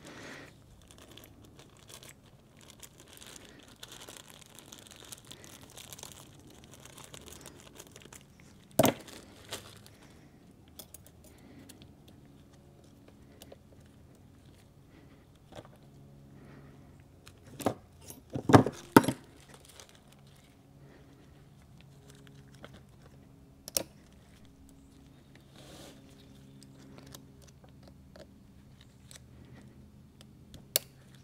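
Steel snap ring being worked into its groove on a transfer case planetary carrier lock plate: quiet rustling and handling, then a few sharp metallic clicks and snaps, the loudest a quick cluster about halfway through. The snap ring pops into its seat.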